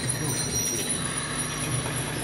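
A live band's quiet, spacey drone: a steady low hum under thin sustained high tones, with no beat.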